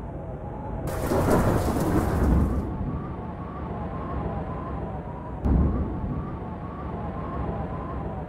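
Thunder, likely a storm sound effect: about a second in, a hissing burst with a low rumble lasts about two seconds, then a sharp crack with a low boom comes about five and a half seconds in. A steady, faintly wavering hum runs underneath.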